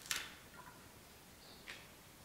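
A small knife cutting through the stem of a xanadu (philodendron) leaf: one short, sharp snick just after the start, then a fainter tick near the end.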